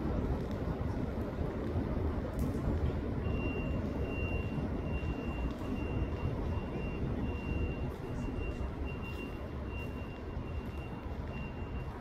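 Steady low rumble of road traffic. From about three seconds in, a single high beeping tone repeats in short pulses.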